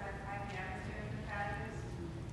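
Faint speech from someone away from the microphones, asking a question, over low room noise.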